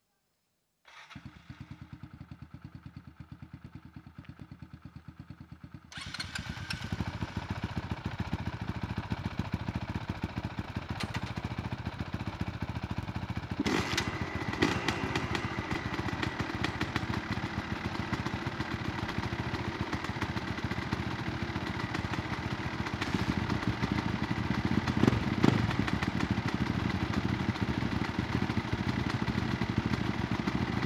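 Several dirt bike engines are started one after another and run together. One engine catches about a second in, more and louder engines join around six seconds in, and by the end all are running at once with occasional louder blips.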